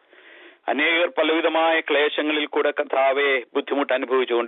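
A man speaking steadily, after a short pause at the start.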